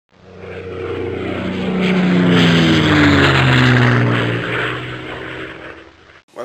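Airplane fly-by sound effect: aircraft engine noise swells in, peaks around the middle and fades away, its pitch falling steadily as it passes.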